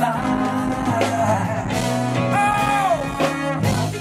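Live band playing on an amplified stage, with a voice singing over drums, congas, keyboard and horns. The bass is distorted by the sub-woofers.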